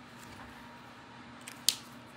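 A single short, sharp plastic click about one and a half seconds in, from a Copic alcohol marker being handled as markers are swapped; otherwise faint room tone.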